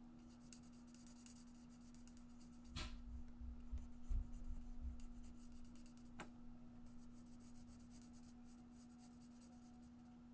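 Alcohol marker (Stampin' Blends) nib scratching faintly across cardstock in short colouring strokes, with a couple of light clicks.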